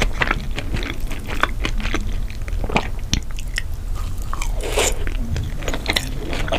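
Close-miked chewing of a mouthful of takoyaki: a dense run of wet mouth clicks and smacks, with a longer swishing sound near the end.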